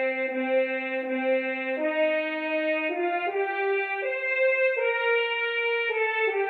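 French horn trio music played back from a score by notation software: a slow melody of sustained horn notes, changing every second or so.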